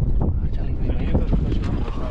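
Wind buffeting the microphone on an open boat: a heavy, steady low rumble with a few sharper gusts or slaps in it.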